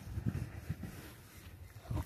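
Faint rubbing of a foam wax applicator pad being worked across a car door panel, with soft, irregular low knocks.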